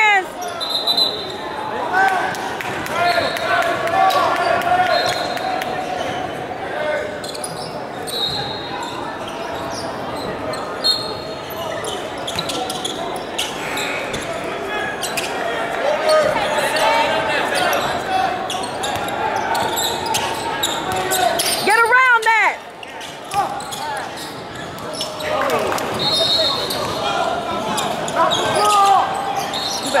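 Basketball game sounds in a large gym: a ball bouncing on the hardwood floor, mixed with players and spectators shouting and talking. The sound echoes through the hall.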